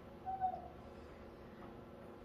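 A single short, faint hoot-like vocal sound, slightly falling in pitch, about a quarter of a second in, over quiet room tone.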